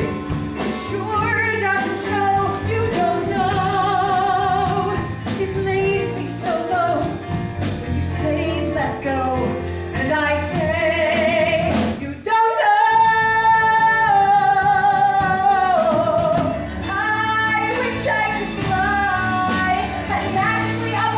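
A song from a rock musical, sung with instrumental accompaniment. The vocal line wavers with vibrato, breaks off briefly about twelve seconds in, then holds one long note for several seconds.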